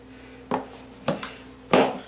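Plastic spark plug maintenance cover of a Honda EU2000i generator being pressed back into the plastic housing: three knocks about half a second apart, the last the loudest.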